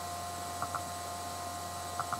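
Steady electrical mains hum on the recording, with two faint pairs of light ticks, one about half a second in and one near the end.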